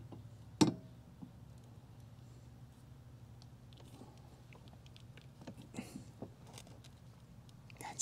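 Ratchet socket wrench strained against the seized center blade nut of an EGO mower, the nut not turning: one sharp metallic click about half a second in, then a few faint clicks and ticks.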